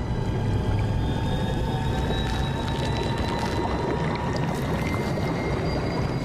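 Ominous cartoon sound-design drone: a dense low rumble with thin high tones held above it and slowly rising, scoring a character's transformation from cartoon into a real human.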